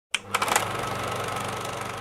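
A few sharp clicks, then a steady, fast mechanical whirring hum.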